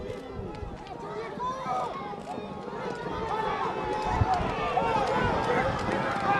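Racegoers' voices shouting and calling out over each other as the horses gallop toward the finish, growing louder through the stretch.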